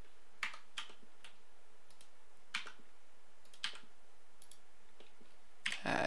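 Scattered single clicks of a computer keyboard and mouse being worked, about eight sharp clicks spread over five seconds, over a faint steady hiss.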